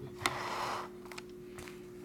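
Handling of a glossy trading card: a light click, then a short rustle of about half a second, and a few faint clicks, over a steady low electrical hum.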